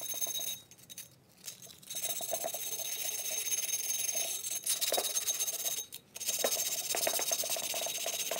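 Cut glass rim being wet-sanded by hand with an abrasive pad: a steady gritty rasping scrape in runs of strokes, stopping briefly a few times.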